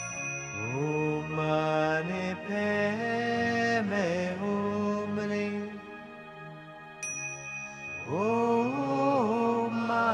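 Indian classical-style music: a voice sings long, sliding held notes over a steady drone. About seven seconds in, a small bell or hand cymbal is struck once and keeps ringing.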